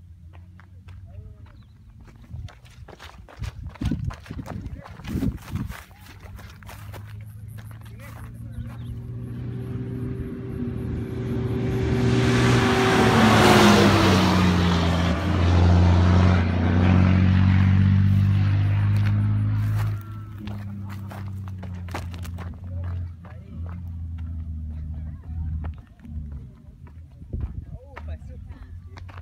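Iveco Dakar race truck approaching at speed on a gravel track, its diesel engine running hard and its tyres crunching over stones. It grows louder over several seconds, passes close about halfway through with the engine pitch falling as it goes by, then drops off sharply and fades into the distance.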